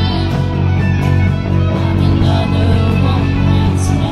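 A live pop-rock band playing an instrumental passage of an electropop song: guitars, keyboard and drums, with no lead vocal.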